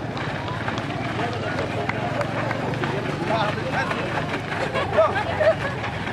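Footfalls of a group of people running drills on a dirt ground, amid indistinct voices and chatter.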